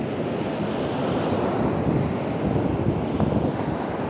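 Ocean surf washing onto the beach, with wind buffeting the microphone in an uneven low rumble.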